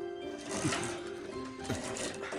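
Background music with a tool scraping a piece of wood in strokes about once a second, each stroke dropping in pitch.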